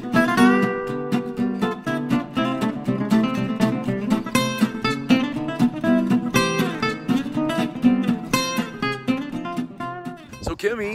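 Background music: strummed acoustic guitar chords at a steady rhythm.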